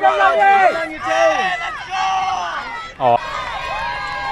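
Spectators shouting and cheering for a runner, their voices raised and drawn out, with crowd noise behind. There is a sharp break about three seconds in.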